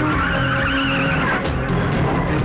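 A car's tyres squealing, a wavering screech that fades out about a second and a half in, over background film music with a steady beat.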